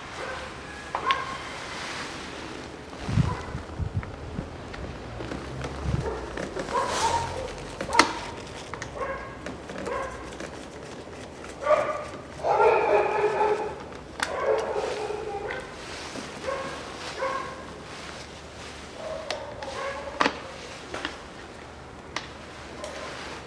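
Sharp clicks and knocks of gloved hands working loose a Land Rover dashboard's wiring and plastic switch housing. An animal's pitched, whining calls come in short bursts, the longest about twelve to thirteen seconds in.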